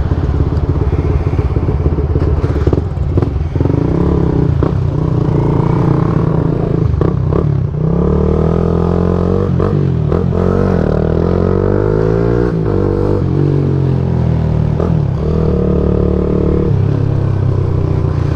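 Motorcycle engines running while riding, the pitch rising and falling with the throttle, at times two engines at different pitches, with a few short clicks.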